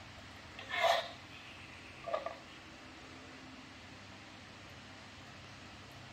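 Thick tahini poured slowly from a jar into a plastic mixing bowl: mostly quiet room tone, with two brief soft sounds about one and two seconds in.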